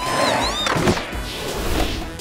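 Cartoon background music with sliding, gliding tones over a rushing skateboard-rolling sound effect, with a sharp hit about a second in.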